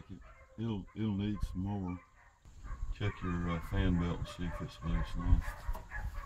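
Short, wordless, pitched vocal sounds in two runs, with a brief quiet gap about two seconds in.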